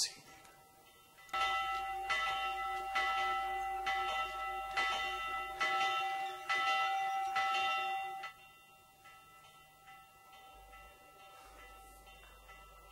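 Church bells ringing, struck about eight times at uneven intervals, each strike ringing on into the next. They stop and die away about eight seconds in. A sharp click comes right at the start.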